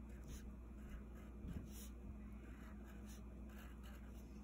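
Faint scratching of a black Crayola wax crayon on paper in a few short strokes, over a low steady hum.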